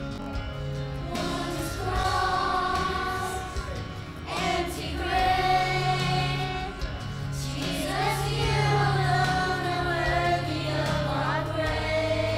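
Children's choir singing a worship song with instrumental accompaniment: long held sung notes over a steady bass line, swelling a little louder about halfway through.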